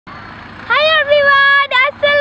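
A young boy's high voice calling out loudly, starting a little under a second in and held on a long, fairly even pitch with short breaks.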